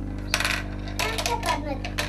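Small hard plastic toy pieces clicking and clattering several times as a child handles them, over a steady low electrical hum.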